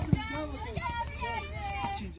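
Children's voices chattering and calling out over one another, with a single short knock just after the start.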